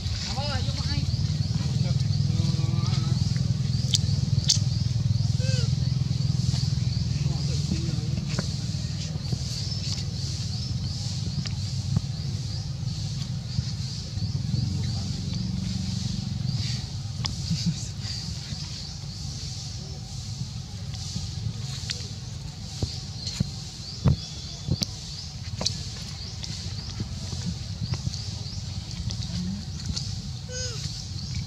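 Outdoor forest ambience: a steady low murmur with a continuous high, pulsing buzz above it, a few faint short squeaks and occasional light clicks.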